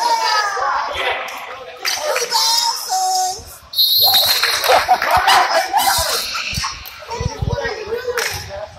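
Players' and bench voices calling out across a basketball gym, with a brief high squeal a little before halfway and a few low thumps of a bouncing basketball near the end.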